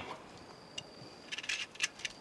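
Faint metallic clicks of pistol cartridges being pressed into a K54 pistol's magazine: one click just before the middle, then a quick run of several clicks in the second half.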